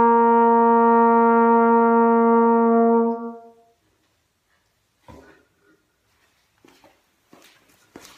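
A valved marching brass horn holds one long, loud final note with a full, bright tone, which ends a little over three seconds in. Faint knocks and rustling follow as the instrument is lowered.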